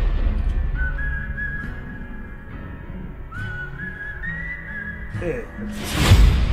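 Whistled melody in a trailer's music, two short phrases over soft low sustained notes, closing as the trailer ends; a loud hit comes in right at the end.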